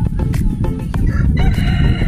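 A rooster crowing once, starting about a second in with a long call that slides slightly down in pitch, over background music with a steady beat.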